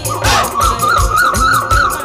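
Live Bangla folk music: a high melody wavering up and down in quick regular trills, about four or five a second, over a steady drum beat and jingling percussion.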